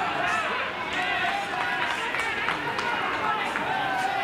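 Many overlapping voices calling out around a baseball ground, with a few short sharp knocks among them.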